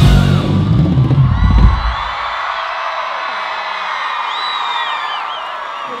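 A live band with drums and heavy bass plays the song's final bars and cuts off sharply about two seconds in. A concert crowd then cheers, with a few high-pitched cries rising and falling over it.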